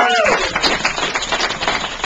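Small audience applauding at the end of a song, the clapping steady throughout, with a cheering voice that rises and falls and dies away just after the start.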